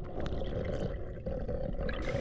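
Underwater noise picked up by a camera in its waterproof housing: a muffled, steady rush of water with a fine crackle in it.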